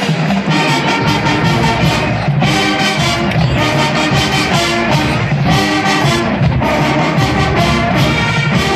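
Marching band playing: brass with drums, sustained notes moving through a melody over a steady beat.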